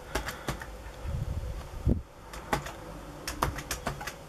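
Computer keyboard keys clicking in a handful of irregular keystrokes, with a short pause about halfway, as a line of text is typed.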